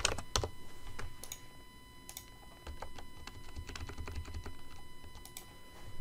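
Typing on a computer keyboard: a run of irregular keystrokes, some in quick clusters.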